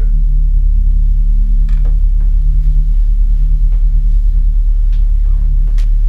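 A loud, low, steady musical drone from the film score, with a few faint clicks over it.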